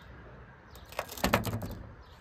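A few light clicks and knocks close together, about a second in, against quiet background.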